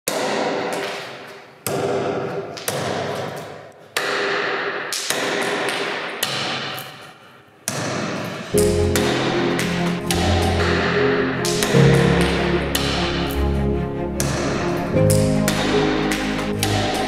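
A slow series of sharp knocks, each ringing out with a long echoing decay. About halfway through, music with sustained low notes comes in and carries on.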